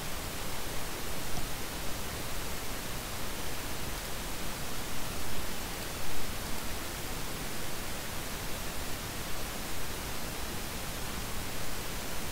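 Steady, even hiss of a microphone's noise floor, with no other distinct sound.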